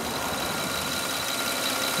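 A 2008 Toyota Solara's 3.3-litre VVT-i V6 engine idling steadily with the hood open.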